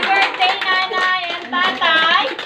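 A small group clapping hands, with excited voices over the claps and a rising-and-falling exclamation near the end.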